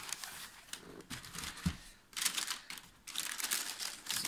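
Thin white wrapping inside a sneaker box being rustled and pulled aside by hand, in several irregular crinkling bursts.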